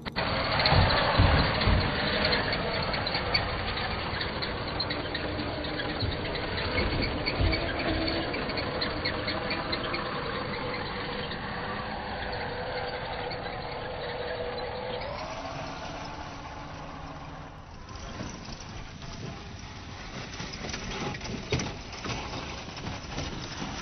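Electric motor and gearbox of a Traxxas TRX-4 RC crawler whining steadily as it drives over dirt and rock, the pitch rising briefly about fifteen seconds in. A few low knocks come in the first two seconds.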